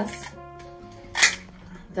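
Garden shears snipping once through the bouquet's stems about a second in, a short sharp cut over background music of sustained held notes.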